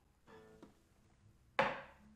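A drinking glass set down on a wooden surface with one sharp knock about one and a half seconds in, ringing out briefly. Before it comes a short, low hum-like note.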